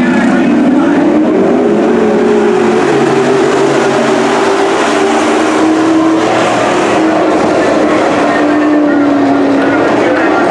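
A field of Super Stock dirt-track race cars' V8 engines running hard together. The engine note rises over the first couple of seconds, then falls slowly as the pack runs on around the track.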